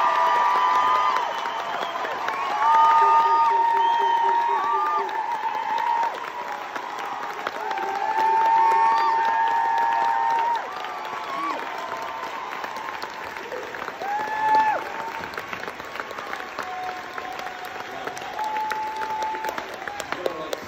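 Theatre audience and cast applauding, with long high whoops and cheers held over the clapping. The applause is loudest for about the first ten seconds, then settles lower while the cheers carry on.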